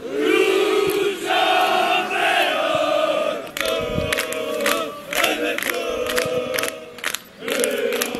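Group of football supporters chanting loudly in unison, with regular sharp claps joining in from about the middle of the chant.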